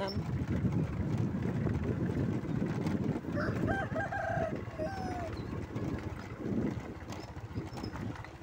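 A rooster crowing once, a call of several short notes ending in a longer falling one, about three to five seconds in, over the steady low rumble of a moving vehicle.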